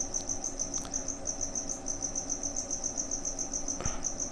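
A cricket chirping steadily, a fast, even pulse of high chirps about eight a second, over a faint low hum, with a few faint clicks.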